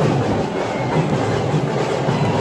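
Loud, dense din of a street procession, with drums beating and a large crowd blended into one continuous wall of sound.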